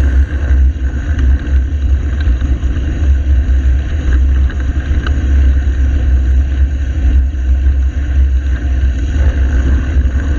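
Wind buffeting the microphone of a camera on a moving bicycle: a loud, steady low rumble with a fainter hiss of road noise above it.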